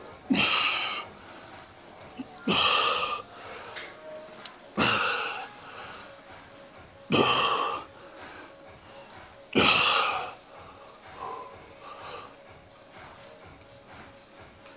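A man's forceful breaths: five sharp exhalations about two and a half seconds apart, one with each repetition of a standing cable chest fly under load.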